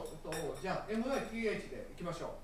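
A person talking in a small room, with light clinks of dishes and cutlery.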